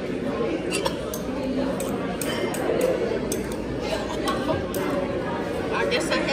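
Busy restaurant dining room: a steady murmur of many people talking at once, with repeated sharp clinks of cutlery and dishes.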